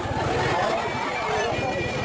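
Crowd of visitors chattering, many voices overlapping, over a low steady rumble.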